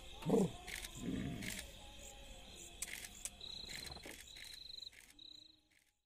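Crickets trilling at night in short high-pitched bursts, three in the second half, with a brief loud voice sound near the start and scattered clicks. The sound fades out near the end.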